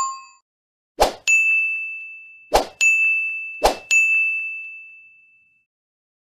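Sound effects for an animated subscribe-and-bell button graphic: three short sharp pops, each followed a moment later by a bright, high bell-like ding that fades away, the last ding dying out about five and a half seconds in. A lower chime from just before fades out in the first half second.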